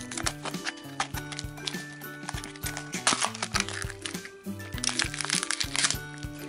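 Background music over crinkling of cellophane wrapping and short clicks as a plastic candy cube is opened and its wrapped contents handled.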